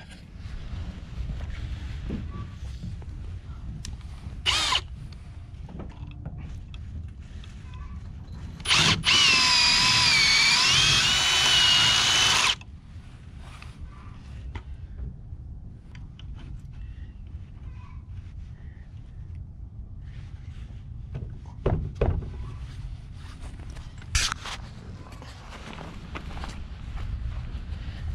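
A power drill boring through a 2x6 wooden cross member at the hinge strap's hole to take a carriage bolt. It runs in one pull of about three and a half seconds, its pitch wavering as the bit cuts. A few short knocks come before and after it.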